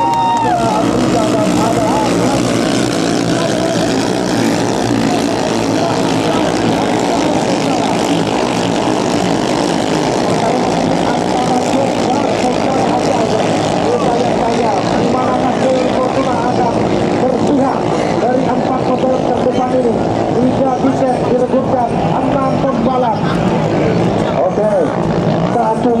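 Several ketinting longtail racing boat engines of the 6–7 horsepower class running flat out, a continuous buzzing drone of overlapping engines whose pitches waver up and down.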